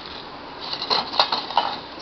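A few small clicks with a faint rustle from a wire-mesh strainer lined with paper towel being handled over a metal pan.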